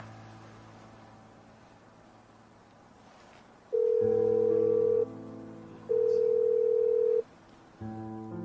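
Mobile phone ringback tone as an outgoing call rings: two long steady beeps, each over a second long, about a second apart. Soft piano background music plays underneath.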